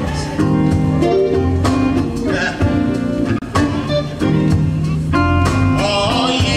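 Live gospel band playing: electric guitars over a drum kit, loud and steady.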